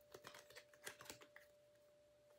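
Tarot cards being handled and shuffled in the hands: a quick run of faint light clicks and taps over the first second and a half, then near silence. A faint steady tone runs underneath.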